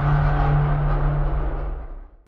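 Closing tail of an intro logo sting: a low, steady drone over a deep rumble that fades out near the end.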